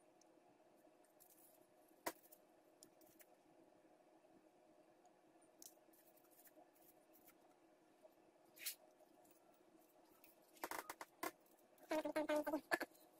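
Faint scrapes and clicks of a soldering iron tip being wiped clean, over a low steady hum. There is one sharp click about two seconds in and a quick run of clicks near the end.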